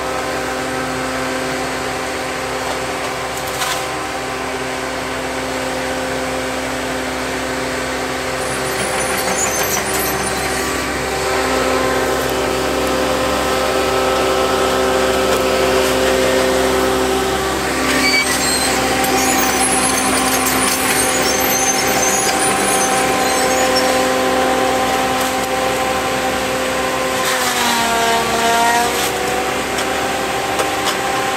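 Diesel engine of a tracked excavator carrying a felling head, running steadily at working speed, a little louder partway through. Near the end its pitch sags briefly and comes back up.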